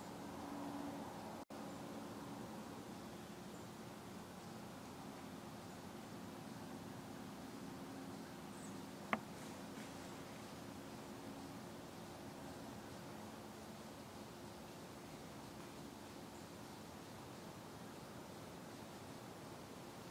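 Faint, steady hiss of a quiet woodland with the light rustle of a raccoon moving over dry fallen leaves, and one sharp click about nine seconds in.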